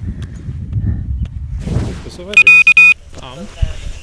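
Electronic buzzer on an FPV wing sounding a quick run of about four loud beeps on one high pitch, a little past halfway. Low rumbling wind and handling noise on the microphone comes before the beeps.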